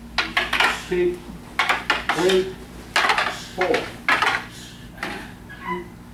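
Wooden bokken practice swords clacking together as several pairs strike and block, many sharp clacks in quick, irregular clusters.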